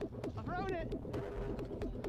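Sound from airsoft game footage: a voice calling out briefly about half a second in, over scattered sharp clicks and pops of airsoft guns firing.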